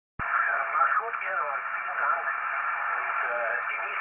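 A distant station's voice received on the 10-metre amateur band through the ICOM IC-575A transceiver's speaker. It sounds thin, with no highs and no deep lows, over steady band noise, and starts suddenly a moment in.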